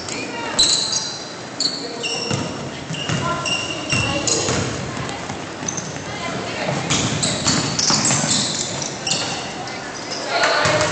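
Basketball bouncing and sneakers squeaking on a hardwood gym floor during a full-court game: many short, high squeaks scattered throughout, with a few dull ball thumps and voices echoing in the hall.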